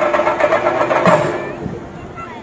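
Chenda drums played in a fast, dense roll that fades away in the second half.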